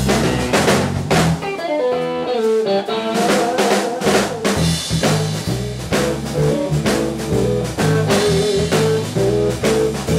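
A blues shuffle in E played by an electric guitar, bass guitar and drum kit. From about two seconds in the bass drops out and the guitar plays a run of notes over the drums, and the bass comes back in about four seconds in.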